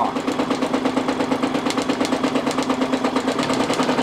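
Brother NQ470 domestic sewing machine stitching free-motion quilting at a steady, slow speed: a constant motor hum with a fast, even rhythm of needle strokes.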